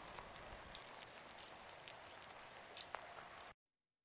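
Near silence: a faint steady hiss with a few faint ticks, cutting off to dead silence shortly before the end.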